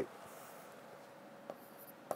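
Marker pen on a whiteboard: a faint tap of the tip about one and a half seconds in, then a light scratch of writing near the end.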